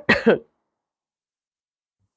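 A woman clearing her throat into her hand, two short quick bursts at the very start.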